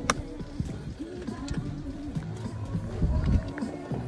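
A single sharp crack of an iron striking a golf ball from the fairway, right at the start, over background music that runs on through the rest.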